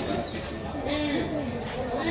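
Voices calling out on and around a football pitch: several short calls whose pitch rises and falls, over a steady low background noise.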